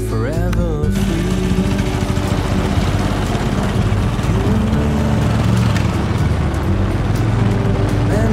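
Music with a sung gliding note cuts off about a second in, giving way to a motorcycle engine running as the bike pulls away over a gravel yard.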